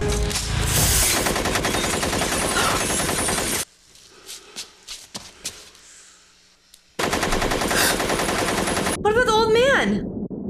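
Automatic gunfire from a movie soundtrack: a long burst of rapid shots, then a lull of about three seconds with a few faint clicks, then a second burst of about two seconds. A voice comes in near the end.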